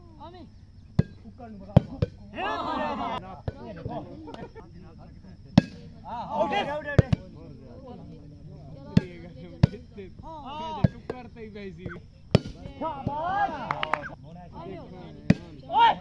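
A plastic volleyball being hit back and forth in a rally: sharp slaps come a second or two apart, with players shouting between the hits.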